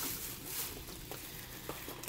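Faint handling noise: fingers rubbing and squeezing soft foam squishy toys on a table and taking hold of a small cardboard box, with a couple of light taps, over a steady hiss.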